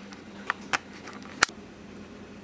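Three short, sharp clicks, the last and loudest about a second and a half in, over a faint steady hum.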